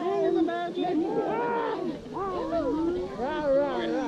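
People's voices overlapping, with strongly sliding pitch and no clear words, like playful vocalizing among a small group.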